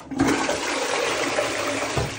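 Rimless toilet flushing: a sudden rush of water that starts a moment in and runs on steadily.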